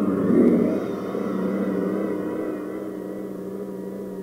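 Rocket launch noise, a rushing rumble that swells at the start and then slowly fades, with a steady hum beneath it.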